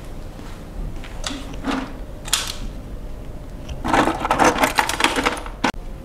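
Clicking and clattering of small hard objects: two short rattles between one and two and a half seconds in, then a denser clatter of quick clicks from about four seconds in that cuts off just before the end.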